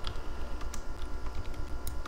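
A few sharp, scattered clicks of a computer keyboard or mouse over a low hum that pulses about seven times a second.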